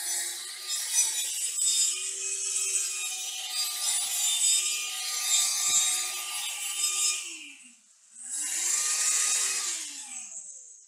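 Einhell angle grinder grinding the edge of a clamped 2 mm steel plate, a steady grinding noise over the motor's whine. About seven seconds in the trigger is let go and the motor winds down, then it is switched on again about a second later, spinning up and running free off the work.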